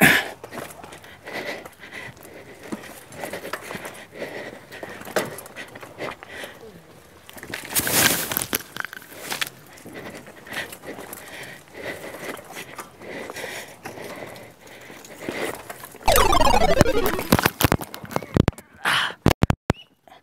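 Mountain bike rolling slowly down a rocky dirt trail, with tyres crunching and scraping over stones and gravel and the bike rattling. About 16 s in, a sudden loud scraping rush is followed by a few hard knocks: the sound of a fall on the rocks.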